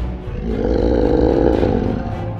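Growling roar sound effect for a toy shark: a rough, steady rumble that comes in about half a second in and holds.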